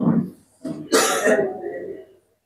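A man coughing and clearing his throat into close microphones: one short burst, then a longer, rougher one about half a second later.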